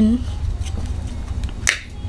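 Fluffy makeup brush tapped into a powder compact: a few faint taps, then one sharp click near the end, over a steady low hum.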